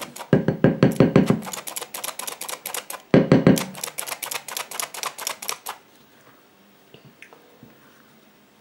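Hand-operated metal flour sifter clicking rapidly, about seven clicks a second, as flour is sifted, with two louder stretches; the clicking stops about six seconds in, leaving only a few faint ticks.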